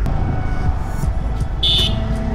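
Yamaha R15 V4 motorcycle riding slowly, a steady low rumble of engine and wind, with one short high-pitched beep about one and a half seconds in.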